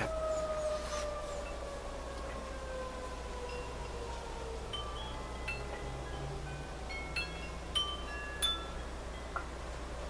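A long tone that slowly falls in pitch fades away over the first half, then scattered light chime notes ring out at different pitches, several close together, in the second half.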